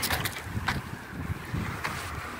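Wind rumbling on the microphone, uneven and low, with a few brief clicks.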